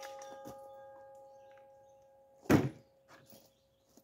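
A single .40 S&W Glock 22 pistol shot about two and a half seconds in, over the fading metallic ring of a struck steel target.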